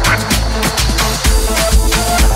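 Afro house dance music with a steady four-on-the-floor kick drum about twice a second and crisp hi-hats over it.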